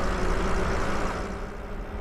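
Wind rushing over the microphone and tyre noise from an e-bike riding at speed, with a faint steady hum from its electric motor. The rush eases a little toward the end.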